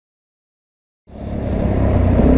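Silence for about the first second, then the 2004 Suzuki DR-Z400E's single-cylinder four-stroke engine cuts in suddenly, running steadily as the bike rides along.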